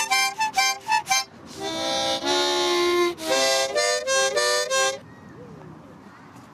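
A child playing a small harmonica: a run of quick short notes, then a longer held chord, then a few more notes, stopping about five seconds in.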